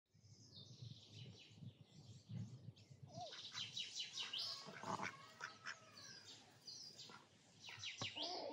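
Small birds chirping and trilling, many quick high calls overlapping.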